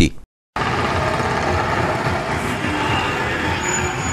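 After a brief dropout to silence near the start, steady street noise from a procession: motor vehicles and motorcycles running, with indistinct voices of the crowd.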